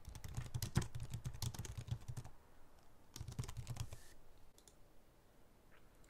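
Typing on a computer keyboard: a run of quick keystrokes for about two seconds, then a shorter run about three seconds in.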